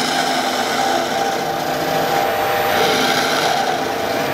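Lathe turning gouge taking a continuous cut across the end face of a spinning wood cylinder: a steady shearing of wood shavings over the lathe's running hum, taking off the centre nub.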